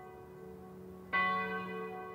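A bell ringing: the tones of an earlier strike fade away, then the bell is struck again about a second in and rings on, slowly dying away.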